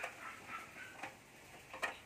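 Two light clicks of a rubber foot being fitted against the metal frame of a single-burner gas stove: one right at the start and one near the end.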